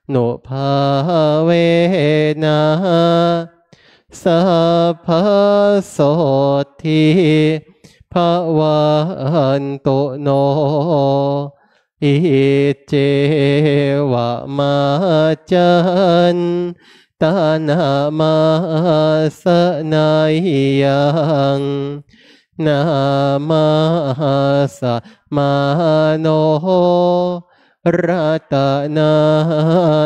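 Thai Buddhist evening chanting (tham wat yen) in Pali. The voices recite on one steady pitch in phrases of a few seconds, each broken by a short pause for breath.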